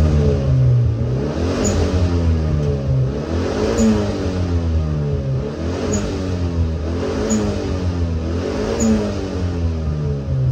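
Toyota EP91 Glanza's four-cylinder engine revved repeatedly with the car standing still, heard from inside the cabin: about five rises and falls in pitch, the revs peaking around 5,000 to 6,000 rpm.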